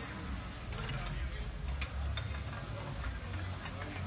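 Street ambience: people talking at a distance over a low steady rumble, with a few sharp clicks about a second in.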